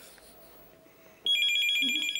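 Telephone ringing: one electronic trilling ring, two high tones warbling rapidly, starting a little past halfway and lasting about a second.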